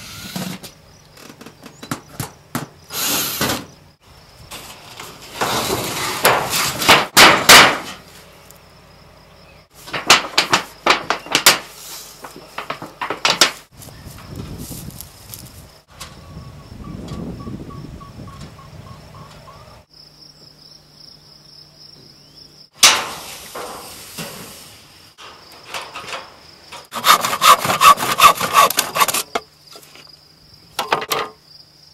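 Hand work on wood: bursts of knocks, scraping and rasping sawing-like strokes, with a dense run of rapid strokes near the end. Crickets chirp steadily in the background.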